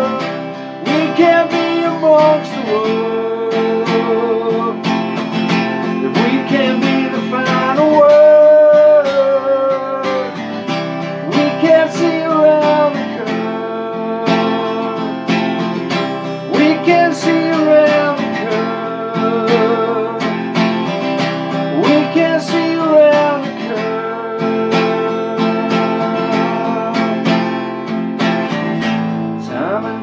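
Acoustic guitar strummed in a steady rhythm through an instrumental passage of a song, with long held notes over the chords.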